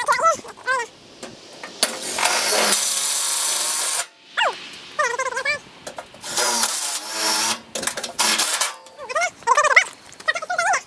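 Short, high-pitched animal cries repeated in quick bunches, between bursts of steady hissing noise; the longest hiss lasts about two seconds.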